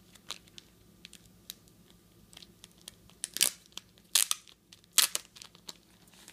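Paper wrapping and tape being torn and pulled off a rigid plastic trading-card holder by hand: a series of short, sharp crackles and rips, the loudest about three, four and five seconds in.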